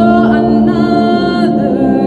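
A woman singing long held notes in an a cappella style, with more than one vocal line sounding at once: a steady low note under a higher line that slides up at the start and then holds.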